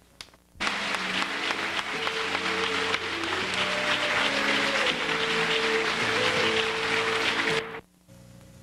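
Audience applause mixed with music of long held notes; it starts about half a second in and cuts off abruptly just before the end.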